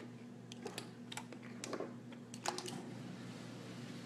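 Faint, irregular light clicks and taps like typing, scattered through the first three seconds or so, over a steady low hum.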